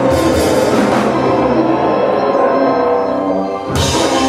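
Live rock band playing an instrumental passage: electric guitars, keyboards and drum kit, with no singing. A sharp crash-like hit comes near the end.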